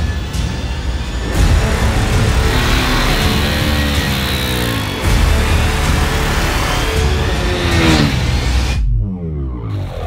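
Music, with a KTM RC 390's single-cylinder engine revving up and falling back several times: about three seconds in, again near eight seconds, and once more near the end.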